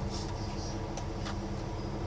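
Steady low mechanical hum inside a parked semi truck's cab, with a couple of faint clicks about a second in.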